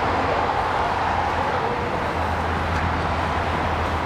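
Steady outdoor background noise with a low hum underneath, of the kind that road traffic makes.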